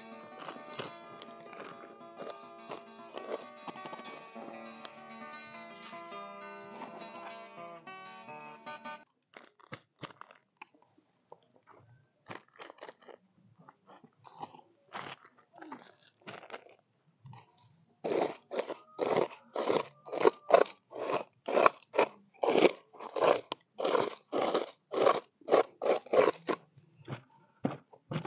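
Background guitar music for about the first nine seconds. Then hands work loose soil into a small plastic rice-sack planting bag: scattered crunching scrapes at first, then from about halfway a steady run of loud crunches, about two a second.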